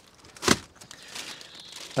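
Clear plastic bag crinkling as the car manuals inside it are handled, with one sharp crackle about half a second in and quieter rustling after.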